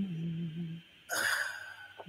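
A held, low hummed note sinks slightly and fades out as a worship song ends. About a second in comes a short, breathy sigh.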